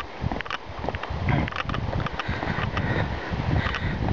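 Footsteps on a walkway, with a breeze buffeting the microphone in low, irregular gusts.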